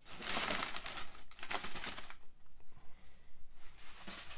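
Crumpled brown kraft packing paper being pulled out of a cardboard box, crinkling and rustling loudly for about two seconds, then going quieter.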